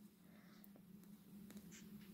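Near silence: room tone with a faint steady low hum and a few faint small ticks.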